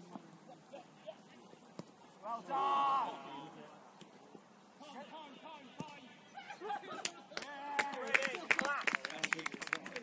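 Players shouting on a football pitch: one long loud call about two and a half seconds in, then a burst of shouts with sharp knocks in the last three seconds as a goal is scored.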